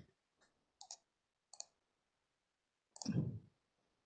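Computer mouse clicks: two close together about a second in and another a little later, as meeting-software controls are worked. About three seconds in comes a short, louder, duller knock.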